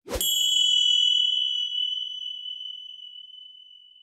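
A small bell struck once, giving a bright high ding that rings on and fades away over about three seconds.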